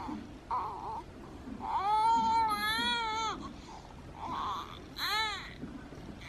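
Baby crying: short fussing sounds, then one long wavering wail about two seconds in and a short, sharp cry near the end, played back through a phone's speaker.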